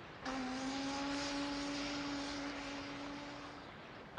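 A ship's horn sounding one long, steady blast with a hissy edge, starting suddenly just after the start and fading away near the end.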